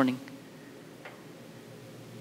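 A man's voice finishes a word, then a pause with only faint room tone and a low steady hum.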